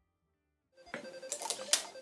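Servo-driven toy slingshot machine firing: about a second and a half of small-motor whirring and clattering clicks, with a sharp snap near the end.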